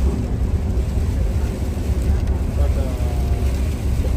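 Steady low rumble of a coach bus's engine and tyres heard from inside the moving bus, with faint voices about three seconds in.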